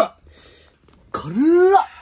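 A man coughs once, a loud, voiced hack about a second in, from the burn of the extremely spicy chili-covered noodles he is eating.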